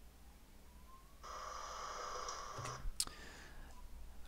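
A roller garage door lifting, heard faintly as playback through computer speakers, for under two seconds starting about a second in, followed by a single sharp click.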